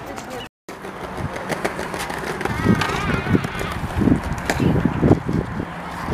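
Outdoor ambience on a paved plaza: indistinct voices, with irregular low knocks and rumbling in the background and a high, wavering voice about halfway through. The sound cuts out briefly just after the start.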